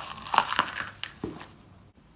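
A sneaker crushing a red pepper against a tile floor: a string of short crunches that fade out after about a second and a half.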